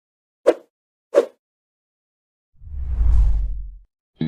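Two short sharp clicks, then a low rumbling whoosh that swells and dies away: sound effects between songs in a music track.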